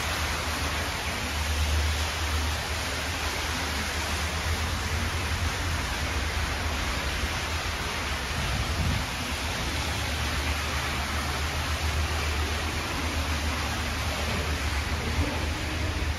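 Fountain jets splashing steadily into a tiled basin, an even rushing water noise with a low rumble underneath.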